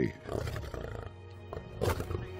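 Background music with steady held notes, and a short lioness snarl about two seconds in.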